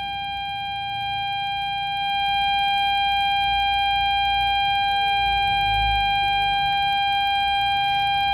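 Steady, unbroken single-pitch tone from a Xiegu X6100 transceiver's speaker while the radio is in tune mode on 80 metres. It is the tuning-carrier tone: the built-in tuner is trying and failing to match a 40-metre whip on that band.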